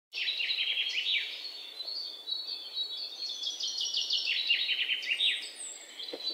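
Small birds chirping and singing: a dense run of quick, high, downward-sweeping notes, one after another, over a faint steady hiss.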